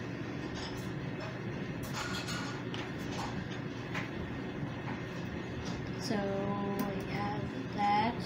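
Small plastic construction-toy pieces clicking and rattling as they are handled and pushed together, a scatter of short light clicks over a steady background noise.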